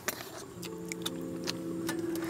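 Light, irregular clicks and taps of chopsticks and a spoon against bowls and a pot during eating, with a faint steady chord of several held tones underneath from about half a second in.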